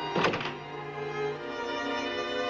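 Orchestral film score with bowed strings holding slow sustained notes. About a quarter second in, a brief loud thump cuts through the music.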